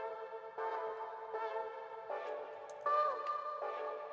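Vocal chops: short, pitched chopped vocal snippets played as a melodic pattern, moving to a new note about every three-quarters of a second, with one note bending downward near the end.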